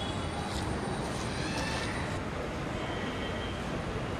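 Steady outdoor street noise: a low, even rumble of traffic.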